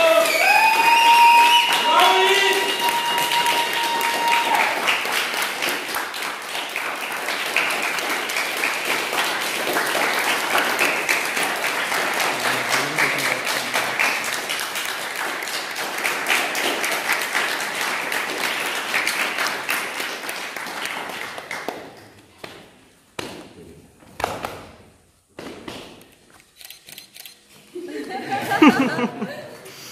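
Applause from a small group in a hall, with voices cheering over the first few seconds, one of them a long held call. The clapping goes on steadily for about twenty seconds, then thins out to a few scattered claps.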